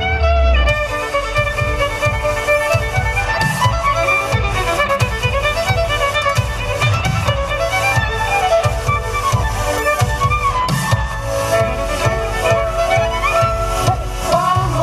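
Three violins playing a fast melody together in harmony, over a steady low beat from a backing track.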